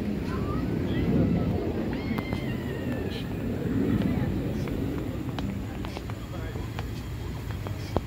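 Indistinct murmur of people's voices, swelling twice, with a few thin whistled bird calls over it in the first half and scattered faint clicks.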